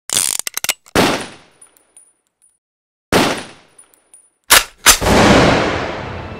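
Gunfire sound effects: a rapid burst of shots, a single heavy shot about a second in and another about three seconds in, each trailing off with faint high metallic ticks. Near the end come two quick shots and a final heavier blast with a long fading tail.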